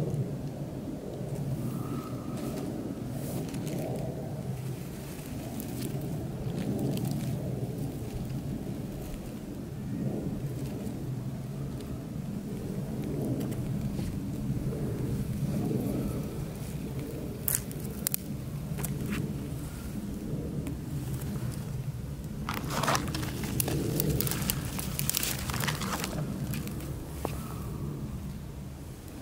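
A small fire of burning tissues under a pile of thin, iced-over twigs, with crackles and snaps that come mostly in the second half, over a steady low rumble.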